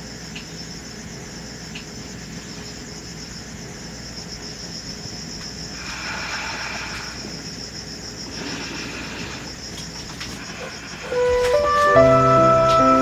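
Steady high-pitched chirping of night insects over a faint low hum. A soft flute melody comes in about a second before the end.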